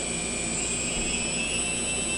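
The four brushless motors of a quadcopter, driven by their ESCs, whir together and spin up, their whine rising in pitch as the throttle is raised. All four run evenly in sync, the sign that the motor sync problem is cured.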